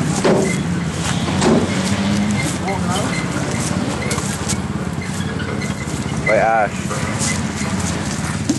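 People's voices over a steady, loud background noise, with one drawn-out call of the name "Ash" near the end.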